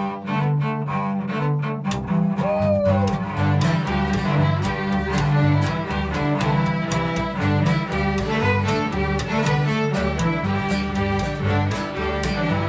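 String band of fiddles, cellos, double bass and acoustic guitar playing an old-time fiddle tune in a steady rhythm, the cellos prominent. The double bass joins about two seconds in, filling out the low end.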